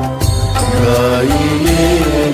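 Background music: a Hindi devotional bhajan to Ganesha, with a melody line over a steady bass.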